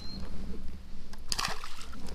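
A carp dropped back into creek water beside a kayak: a short splash about a second and a half in, over a low steady rumble.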